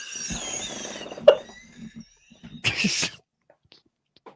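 Breathless laughter: wheezy, squeaky breaths trailing off, a sharp click about a second in, then one short hissing burst of breath near three seconds.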